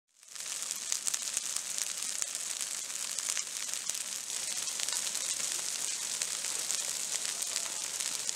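Low fire burning through dry leaf litter on a forest floor: a steady hissing crackle with many small sharp pops. It fades in just after the start.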